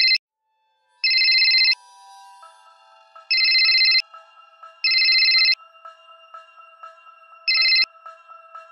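Mobile phone ringtone: a high, trilling electronic ring in five short bursts, the last one cut short as the phone is answered.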